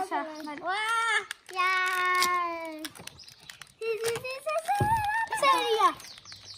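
Children's voices singing long, drawn-out held notes one after another, each about a second long, with a short low thump about five seconds in.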